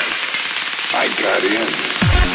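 Trance music in a beatless passage: a dense, crackling noisy texture with voice-like fragments over it and no kick drum or bass.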